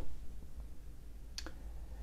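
Quiet room tone with a low steady hum, and a single short click about one and a half seconds in.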